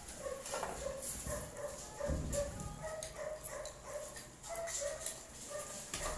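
A dog whimpering: a string of short, even-pitched whines, two or three a second, with a dull thump about two seconds in.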